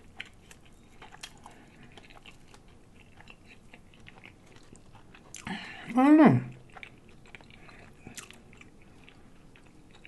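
Close-up chewing of a fried corned beef egg roll: soft wet mouth clicks and crunches. About six seconds in, a voiced hum rises then falls in pitch.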